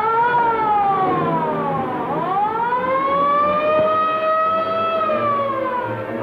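A siren wailing: its pitch slides down over the first two seconds, swings back up and holds high, then falls again near the end.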